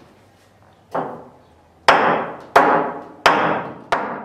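A stake being hammered into the floor to set up warp-measuring stakes: one lighter blow about a second in, then four heavy blows roughly two-thirds of a second apart, each ringing briefly.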